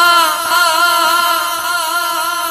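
A singer holding one long note with a wavering vibrato, part of a slow devotional song, growing slightly weaker toward the end.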